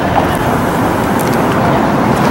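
Steady outdoor city ambience: the even rumble of street traffic.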